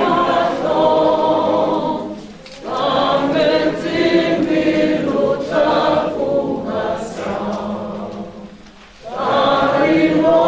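A group of voices singing a hymn together, phrase by phrase, with two short breaks for breath, one about two and a half seconds in and one near the end.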